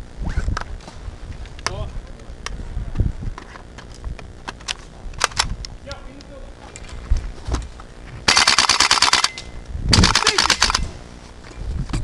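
GHK AKS-74U gas-blowback airsoft rifle fired close by in two full-auto bursts of about a second each, half a second apart, near the end, with scattered single clicks of airsoft shots and hits before them.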